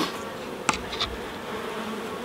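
Honeybees buzzing steadily over the open frames of a National hive, with a sharp click about two-thirds of a second in and a fainter one a moment later.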